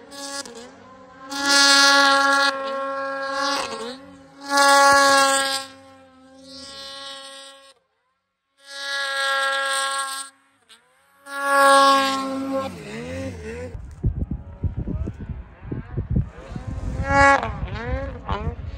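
Snowmobile engines revving in repeated bursts of a few seconds each, a steady high-pitched whine that comes and goes as the throttles open and close. In the last few seconds a low rumbling wind noise on the microphone takes over, with one more rev near the end.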